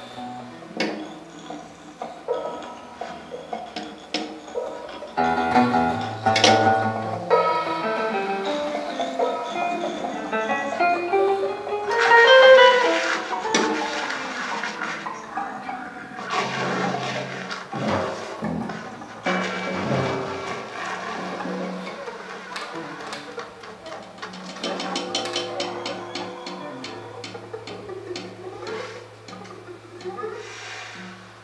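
Live jazz quartet playing: a soprano saxophone carries the melody over an archtop electric guitar, electric bass and drum kit. The playing swells to its loudest about twelve seconds in.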